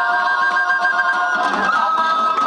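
Georgian folk ensemble playing: several high notes held steady together over plucked lute strings.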